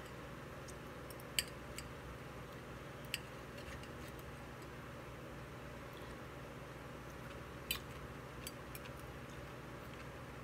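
Knife and fork clicking and scraping on a plate while cutting asparagus: a few short, sharp clicks, three of them standing out, over a faint steady room hum.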